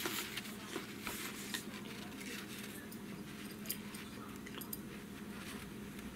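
Loose notebook paper rustling as the sheets are handled and moved, mostly in the first second or two, then a few light clicks and taps.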